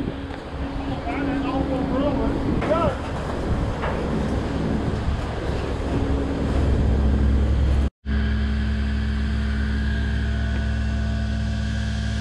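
An engine running steadily, heard over open-air noise, with a faint voice in the first few seconds. The sound drops out for an instant about eight seconds in, then the engine hum carries on steadier.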